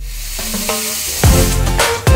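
Espresso machine steam wand opened with a sudden hiss that fades over about a second, under background music with drum hits coming back in.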